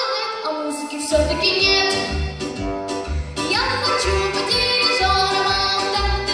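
A girl singing a song into a microphone over a backing track. A bass beat comes in about a second in and pulses about twice a second under the voice.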